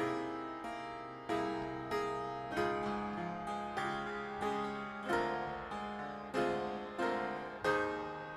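Instrumental keyboard music: chords struck at a steady pace, about three every two seconds, each ringing and fading before the next.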